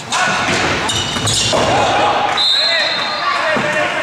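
Players and spectators shouting in a sports hall during an indoor hockey penalty corner, after a sharp knock right at the start. A referee's whistle sounds once, briefly, about two and a half seconds in.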